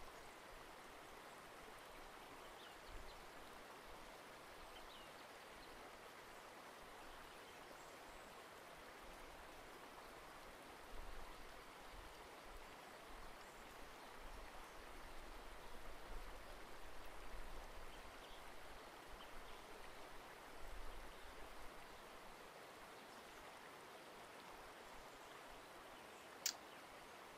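Near silence: steady hiss of room tone, with faint low rumbles through the middle stretch.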